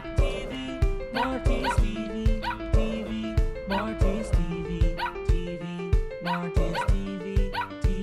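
Maltese dog howling over upbeat background music with a steady drum beat.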